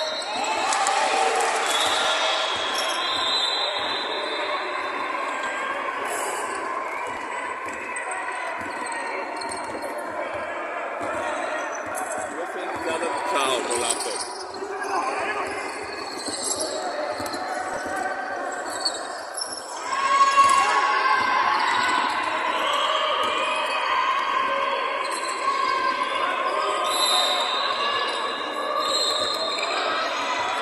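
Pickup basketball game on a hardwood court: the ball bouncing as players dribble, with players' voices calling out over it. The sound grows louder about twenty seconds in.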